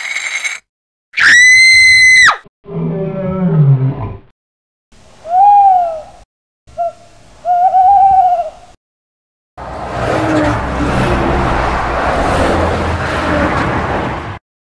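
A string of cartoon sound effects: a short high squeal, then a loud held squeal, a growling roar that falls in pitch, and two short hooting calls. These are followed by about five seconds of steady rumbling noise as a toy truck drives past.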